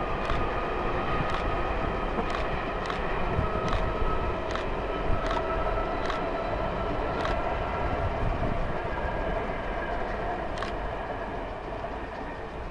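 Taiwan Railway passenger train crossing a concrete viaduct: a steady rumble and faint whine of wheels on rail, with sharp clicks about once a second as the wheels pass over rail joints. The sound eases off over the last few seconds as the train moves away.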